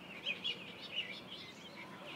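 Small birds chirping: a string of short, high, wavering notes, several a second, over faint outdoor background noise.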